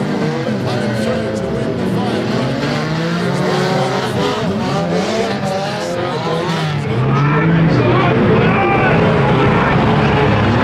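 Several banger racing cars' engines revving together, their pitches rising and falling against one another as the cars drive and jostle on the track. The sound gets louder about seven seconds in.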